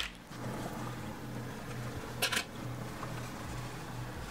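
Quiet handling of quilted fabric blocks as plastic quilting clips are fastened along their edge, with one short crisp sound about halfway through, over a steady low hum.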